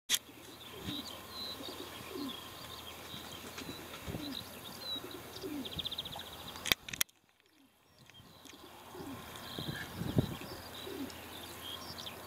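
Pigeons cooing over and over, low falling coos about once a second, with small birds chirping higher up. Two sharp clicks come just before the middle, followed by a brief drop to near silence before the cooing resumes.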